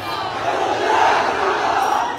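A large crowd of men shouting together, many voices overlapping into a loud roar that swells about a second in.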